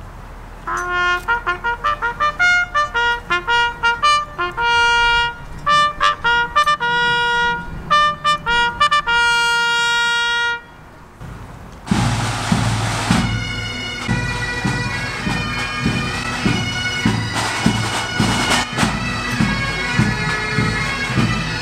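A bugle call of separate held and repeated notes on the bugle's natural harmonics, ending about ten and a half seconds in. After a short pause a pipe band strikes up: bagpipes with their steady drone over snare and bass drum beats.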